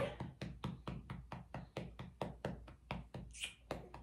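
Hands patting two babies' backs to burp them, alternating between the twins: quick, steady soft pats at about four to five a second.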